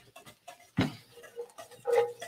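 Scattered light clicks and scrapes of cooking utensils, with one louder knock a little under a second in.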